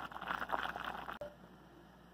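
Rice and water bubbling at a boil in an open pot: a soft, irregular bubbling that stops abruptly just over a second in, leaving only a faint background.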